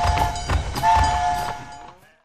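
A cartoon train-horn sound effect, a two-note blast sounding again about a second in, among short sharp pops from fireworks, the whole fading out near the end.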